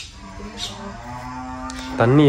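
A long, drawn-out pitched call lasting over a second, quieter than the nearby talk, with faint footsteps on gravel.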